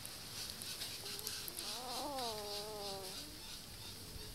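Newborn puppy whining: one drawn-out cry, about a second and a half long, that rises, then falls and holds before trailing off, about midway through.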